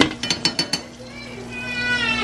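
Metal kitchen tongs clicking and clacking against a metal baking sheet, a quick run of about six clicks in the first second.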